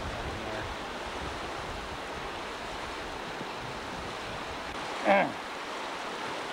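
Muddy floodwater rushing steadily down a flooded wash channel, an even rush of turbulent water. A brief spoken sound cuts in about five seconds in.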